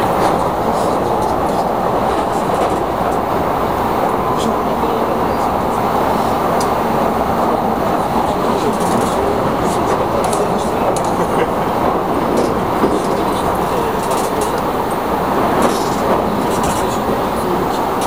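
Electric commuter train running, heard from inside a passenger car: a steady rumble of wheels on the rails with faint clicks here and there.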